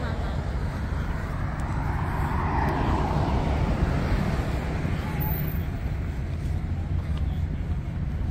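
Roadside traffic: a minibus passes, its engine and tyres swelling and then fading a few seconds in, over a steady low rumble of city traffic.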